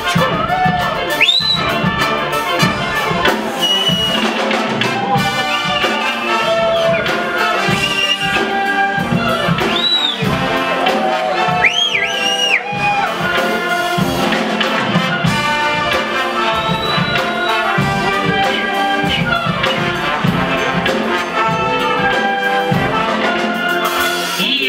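Brass band with a drum kit playing an instrumental passage, loud and steady throughout.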